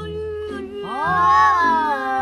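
A cat meowing once, a single long call that rises and then falls in pitch about a second in, over background music.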